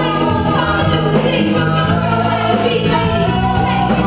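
Live band with a female lead singer and backing singers, voices held in harmony over the band.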